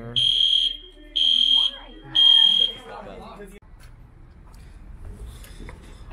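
Building fire alarm sounding three loud, high-pitched half-second beeps about a second apart, the three-pulse evacuation pattern; the alarm cuts off suddenly after about three and a half seconds, leaving a faint low background hum.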